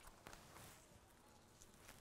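Near silence: room tone with a few faint soft ticks.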